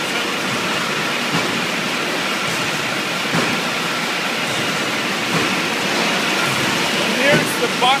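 Steady, loud noise of a running beer bottling line: glass bottles moving along conveyors and the machines working, an even din with a faint steady whine.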